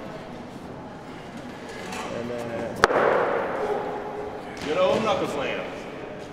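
A single sharp slam about three seconds in: an arm-wrestler's hand being pinned down onto the arm-wrestling table, ending the match. Low voices are heard around it.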